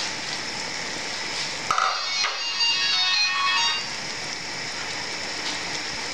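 Vegetables sizzling in a cooking pot on the stove, a steady hiss. About two seconds in, a short high-pitched melody of a few notes plays over it for under two seconds.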